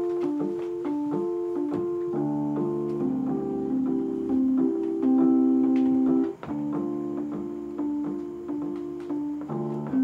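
Electronic keyboard playing a repeating figure of short, steady-toned notes. Lower held chords join about two seconds in, drop out briefly a little past the middle, and then the short-note figure carries on.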